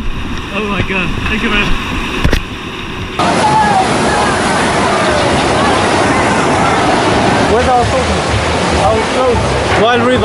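Steady rush of water in a log flume channel, with voices talking over it. About three seconds in the recording cuts to a fuller, louder water noise.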